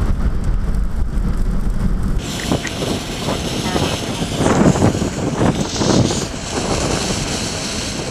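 Strong storm wind buffeting the microphone and the vehicle in blowing dust, a heavy low rumble at first. About two seconds in, the sound changes abruptly to a hissing wind with gusts that swell and fade through the middle.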